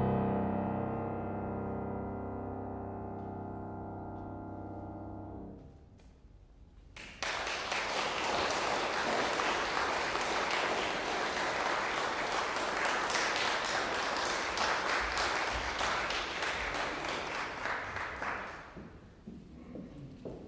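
Concert grand piano's final chord ringing and fading over about five seconds, then, after a short silence, audience applause that runs for about eleven seconds and tails off near the end.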